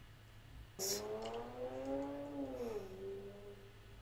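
A short sharp noise about a second in, then a single long moan-like voice lasting nearly three seconds, its pitch rising and then falling.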